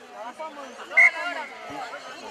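Shouting and chatter from the sideline, with a short, loud whistle blast from the referee about halfway through.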